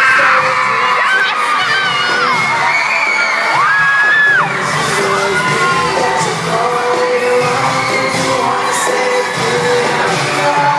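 Live pop band and singers performing in a theatre, heard from the audience through a phone's microphone. Fans near the phone scream loudly over the music, with long high screams that rise, hold and fall, several in the first half.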